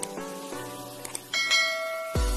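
Subscribe-button sound effects over background music: a sharp mouse click at the start and another about a second in, then a bright notification-bell chime that rings on to the end.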